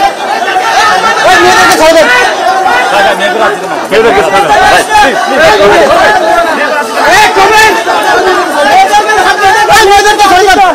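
Crowd of many voices shouting and yelling over one another, loud and without a break.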